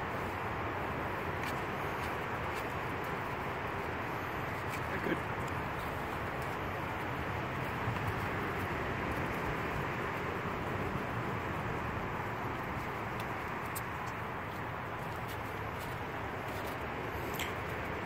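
Steady outdoor background noise with a few faint clicks and rubs from gloved hands handling the rubber boots of a float switch plug connector.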